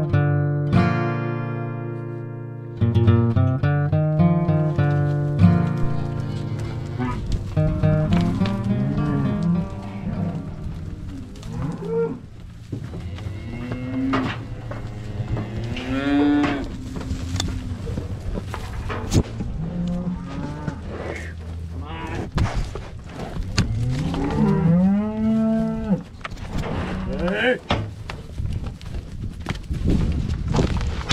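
Acoustic guitar music fades out over the first few seconds, then beef cows moo repeatedly in a corral, each call rising and falling in pitch, among scattered hoof scuffs and knocks. The cows are bawling after being separated from their calves at weaning.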